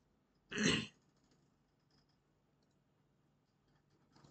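A man clears his throat once, briefly, about half a second in, followed by a few faint computer-keyboard clicks.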